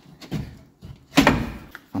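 Front control arm of a VW Touareg being worked free of its mounts after its seized bolt was sawn through: a couple of light knocks, then one loud clunk a little over a second in as it comes loose.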